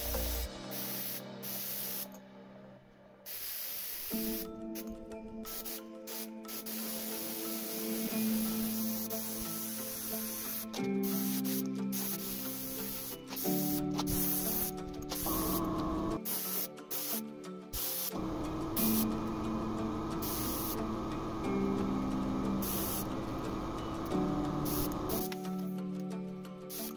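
Iwata LPH 80 mini spray gun spraying acrylic paint in repeated short bursts of air hiss, starting and stopping again and again. Background music with held tones plays throughout.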